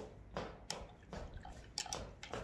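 A few faint, short clicks and taps, one about half a second in and a quick pair near the end, from painting tools being handled off-camera.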